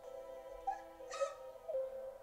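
Soft, sustained music from an anime episode's soundtrack, with a short breathy sound about a second in.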